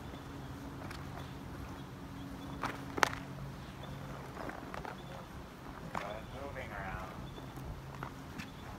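Footfalls of a young horse moving around on sand footing, with a steady low hum behind and a single sharp click about three seconds in.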